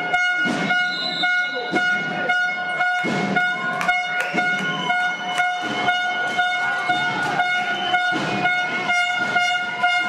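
A steady, unbroken high-pitched horn-like tone over repeated sharp thuds in a sports hall.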